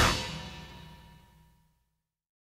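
A rock band's final chord ringing out after the last hit, dying away to silence about a second and a half in.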